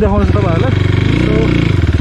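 Dirt bike engine running steadily while being ridden, with a person's voice over it.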